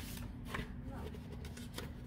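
Faint rustling and a few soft clicks of handling, over a low steady hum.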